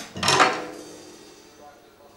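A single hit on a studio drum kit with cymbals ringing and fading away over about a second.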